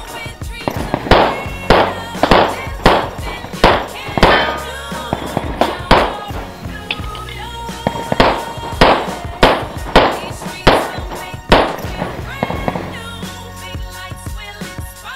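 Pistol shots fired one after another at roughly half-second intervals, with a pause of about two seconds midway, as a practical-shooting stage is run against targets. Music plays underneath.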